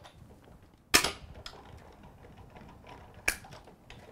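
Sizzix hand-cranked die-cutting machine rolling a cutting-plate sandwich through its rollers, with a quiet rumble and two sharp cracks, one about a second in and a weaker one near the end.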